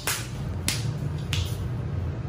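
Two light slaps of a toddler's bare feet on a hard tiled floor as she spins, about two-thirds of a second apart, over low room hum.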